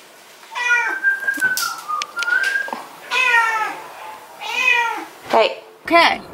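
Domestic cat meowing repeatedly, four or five separate calls a second or so apart.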